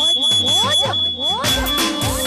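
Live Gujarati dandiya raas band music: a run of quick, repeated rising pitch slides over a steady high tone, with the drums mostly dropping out and then coming back in full about one and a half seconds in.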